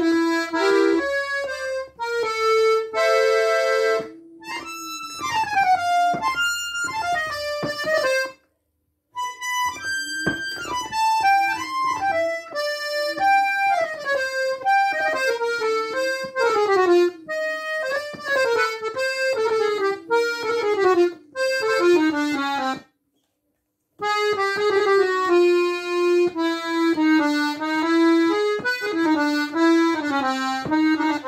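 Excelsior accordion played on its treble keyboard in quick runs of notes, mostly falling, with a short held chord about three seconds in and two brief stops, played to check the tuning of its reeds.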